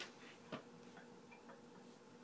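Near silence: a few faint, unevenly spaced clicks, the loudest about half a second in, over a low steady hum.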